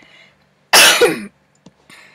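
A person's cough, loud and short at about half a second, close to the microphone, about a second in. Two faint computer-mouse clicks follow near the end.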